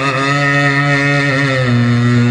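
A male voice singing a naat into a microphone, holding one long, drawn-out note.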